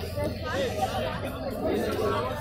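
Chatter of people talking nearby in a crowd, no single clear voice, over a steady low background noise.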